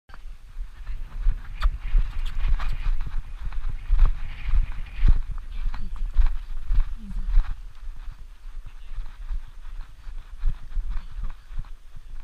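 Horse's hooves striking arena sand in an irregular gait, heard from the saddle, louder in the first half. A steady low rumble sits on the microphone under the hoofbeats.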